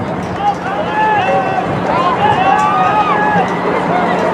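Several people's voices overlapping, indistinct talk and calling out, over a steady low hum.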